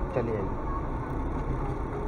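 A car driving along a rough dirt track, heard from inside the cabin: steady engine and tyre noise. A brief voice comes at the very start.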